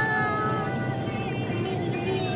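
Pop music with a high sung note held until just under a second in, then a lower, shifting vocal line over the backing track.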